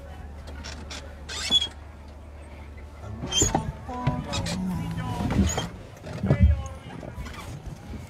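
A horse-drawn carriage creaking and squeaking, with scattered clicks and low voices behind it.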